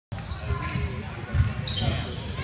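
A basketball bouncing on a hardwood gym floor, a few irregular thumps with the loudest about one and a half seconds in, with spectators' voices around it.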